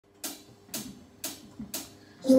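Four-beat count-in on a drum track: four short cymbal-like hits, evenly spaced half a second apart, marking the tempo just before the song begins.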